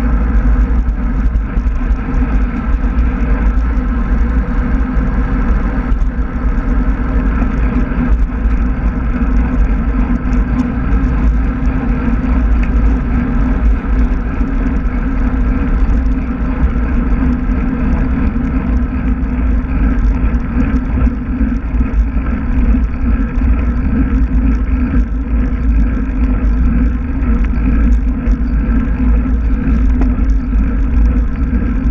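Steady rush of wind buffeting a handlebar-mounted action camera's microphone on a moving road bike, a loud low rumble mixed with tyre noise from the road.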